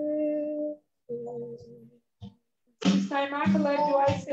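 A single voice sings or hums a held note that slides up into pitch, pauses, then holds a second, softer note. From about three seconds in it breaks into quicker, wavering sung or spoken words.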